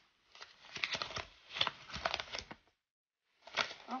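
Paper note being unfolded and handled, a run of crisp rustles and crinkles for about two and a half seconds that cuts off suddenly.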